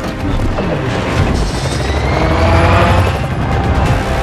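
Dramatic trailer score with deep booms and rumble under it, and a rising whoosh that builds through the middle of the stretch.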